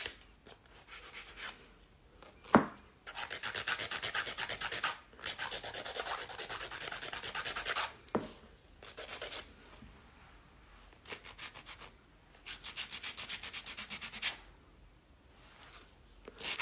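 A hand nail file rasping in quick back-and-forth strokes across the tip of a long acrylic nail to narrow it. The filing comes in several runs with short pauses, and there is a sharp tap about two and a half seconds in.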